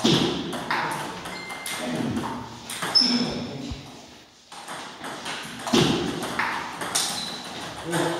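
Table tennis ball striking the table and rubber bats during a doubles rally: a quick series of sharp clicks. There is a short pause a little after the middle, then the clicks resume.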